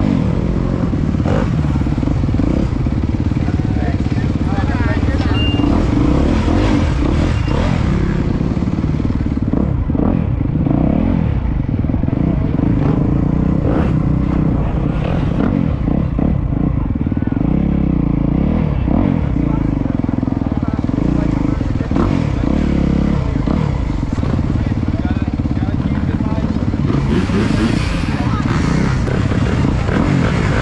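Dirt bike engine running steadily at low revs, loud and close.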